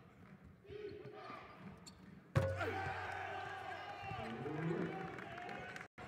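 Basketball arena game sound: low crowd murmur and court noise from play on the hardwood. It is faint for the first two seconds, then steps up suddenly at an edit about two seconds in and stays at a low, steady level.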